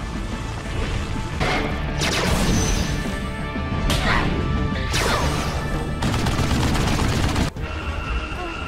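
Cartoon fight sound effects: a run of sudden blasts and heavy crashes, about one a second, over dramatic orchestral score.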